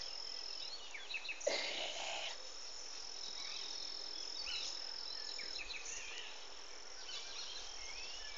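Insects keeping up a steady, thin high-pitched drone, with a few short bird chirps. A brief rustling noise comes about a second and a half in.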